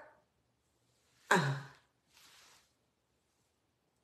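A woman's short voiced sigh, falling in pitch, followed by a faint breath.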